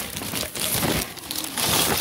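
Plastic sheeting rustling and crinkling as car parts lying on it are handled and moved, loudest near the end.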